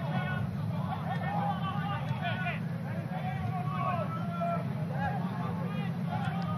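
Soccer stadium ambience: scattered calls and chatter from players and the crowd over a steady low hum.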